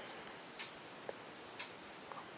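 A few faint, light clicks, irregularly spaced, over low steady background hiss.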